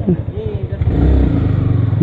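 Yamaha sport motorcycle's engine pulling away at low speed: a rapid, even firing pulse that gets louder about a second in as the throttle opens. A brief voice near the start.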